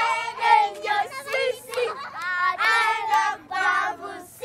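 Children singing a high-pitched melody in short sung phrases.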